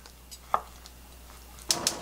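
Kitchen knife slicing through a block of soft tofu, with one sharp knock of the blade on a wooden cutting board about half a second in. A short clatter follows near the end.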